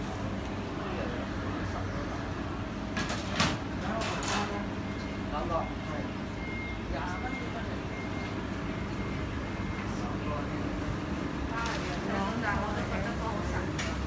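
Indistinct voices of people in a shop over a steady background hum, with two sharp clicks about three and a half and four seconds in.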